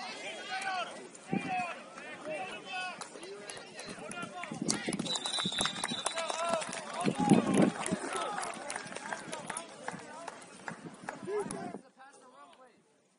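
Football crowd and sideline voices shouting and cheering over one another, with a referee's whistle blown once for about a second, about five seconds in. The voices swell loudest a couple of seconds after the whistle, and the sound cuts off abruptly near the end.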